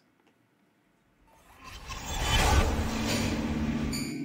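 Transition sound effect for a glitch-style scene change: near silence for about a second, then a rushing noise that swells up, peaks past the middle and holds steady with a low hum under it.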